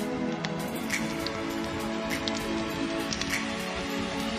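Wood campfire crackling, with irregular sharp pops, over background music with long held tones.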